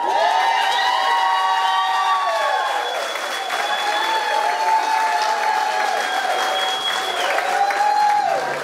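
A crowd applauding and cheering, with long, high held whoops that rise and fall over the clapping.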